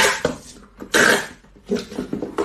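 Box cutter blade slicing along packing tape on a cardboard box: short, loud rasping strokes, three of them, about a second apart.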